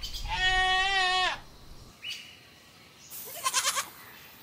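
A goat bleating: one long, wavering call of a little over a second. Near the end comes a shorter, higher and rougher sound.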